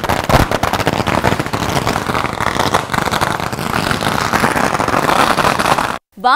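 A string of firecrackers going off: rapid bangs running together into a dense, continuous crackle.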